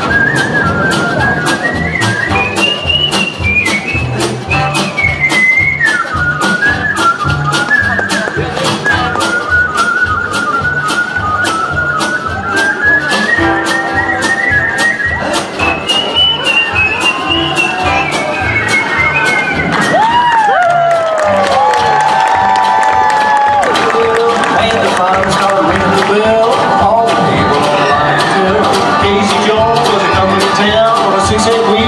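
A whistled melody played lead over a bluegrass band's swing accompaniment with banjo, upright bass, guitar and a steady drum beat. About two-thirds through, a few whistled notes slide downward, and near the end the whistling gives way to the band's instruments.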